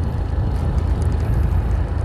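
Strong wind buffeting the microphone: a loud, continuous, fluttering low rumble.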